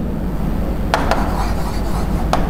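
Marker pen writing on a whiteboard, its tip rubbing across the board, with a couple of light taps about a second in, over a steady low room hum.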